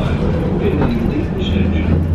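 Steady low rumble and hum of a cable-hauled funicular car running down its track, heard from inside the car.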